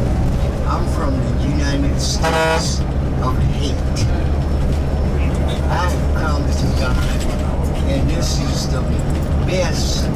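Steady low drone of a coach bus's engine and road noise heard from inside the cabin, with a vehicle horn sounding once, briefly, about two seconds in.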